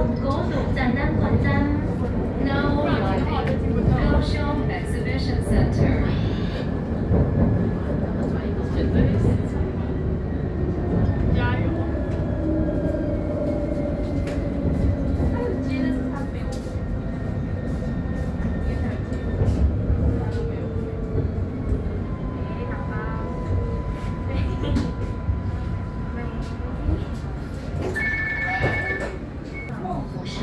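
Light-rail tram running, heard from inside the car: a steady rumble of wheels on rail, with motor whine tones that hold and slowly slide in pitch. A short two-tone chime sounds near the end as the tram comes into a station.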